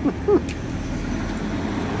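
Steady low hum of a nearby motor vehicle's engine, with a short voice-like sound and a single click in the first half second.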